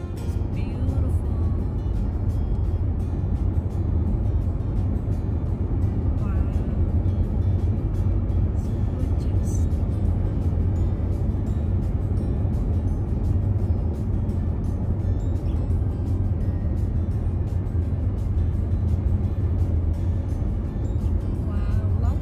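Steady low road rumble inside a car's cabin at highway speed, from tyres on the pavement and the running engine.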